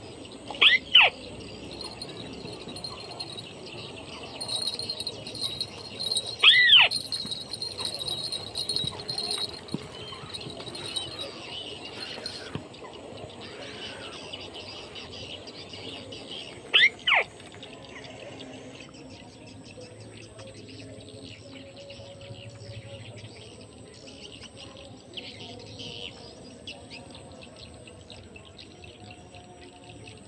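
Three loud, short bird calls, each a quick double note, about a second in, near seven seconds and near seventeen seconds, over a faint steady background of insects and distant birds.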